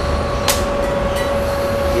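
Steady mechanical hum with a constant pitch, and one sharp click of a keyboard key about a quarter of the way in.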